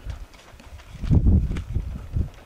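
Low thuds and rumbles of handling noise on the microphone as the rifle and its scope-mounted camcorder are moved, loudest a little past halfway.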